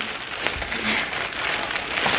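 Thin plastic carrier bag rustling and crinkling as a hand rummages inside it.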